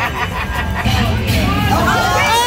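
Overlapping chatter of several people in a busy casino, with a low rumble under it around the middle; a raised voice starts near the end.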